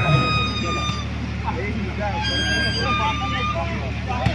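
Two long, steady horn toots, each about a second long, the second about two seconds after the first, over crowd voices and a steady low hum.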